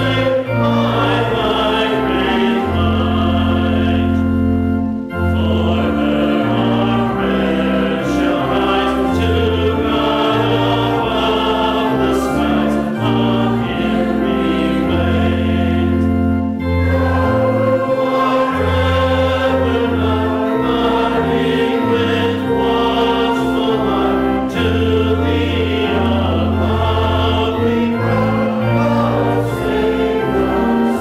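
Congregation singing a hymn with pipe-organ-style accompaniment: long held organ notes under the voices, with short breaks between lines about five and sixteen seconds in.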